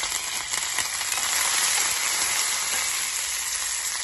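Fresh curry leaves sizzling in hot oil with cumin seeds and dried red chillies in a small steel kadai: a steady, dense sizzle with small crackles, the tempering (tadka) for a chutney.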